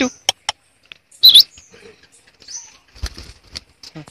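Rose-ringed parakeet giving one loud, harsh screech about a second in, with shorter high chirps and clicks around it. Soft low thumps and rustling come near the end as the bird moves about.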